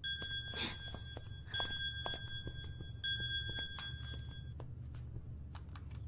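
Mobile phone ringing with a steady electronic two-tone ring: three rings of about a second and a half each, with only brief gaps between them, stopping about four and a half seconds in.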